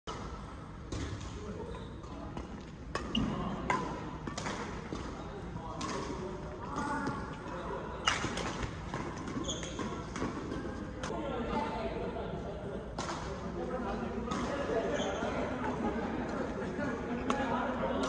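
Badminton rackets striking a shuttlecock in a doubles rally: sharp cracks at irregular intervals of about one to two seconds, echoing in a large sports hall, over background voices.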